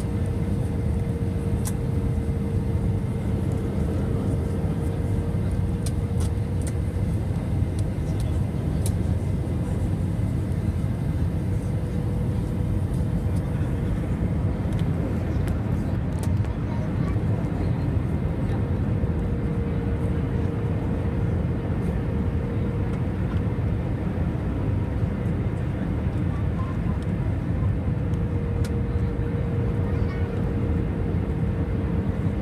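Steady rumble of a jet airliner's engines and rushing air heard inside the cabin during the descent, with a humming tone that fades in and out every few seconds.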